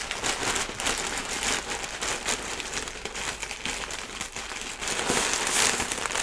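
Plastic poly mailer bag being opened and handled, crinkling and rustling throughout, louder about five seconds in.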